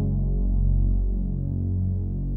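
Background music in a slow, sustained passage: a deep synthesizer drone with soft held tones above it.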